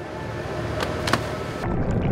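Rushing, churning water with a low rumble, and a few sharp clicks about a second in. Near the end the sound turns louder, duller and deeper.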